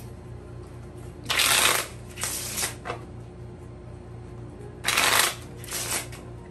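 A deck of tarot cards shuffled by hand: two loud shuffles, about a second in and about five seconds in, each followed by a shorter, softer one.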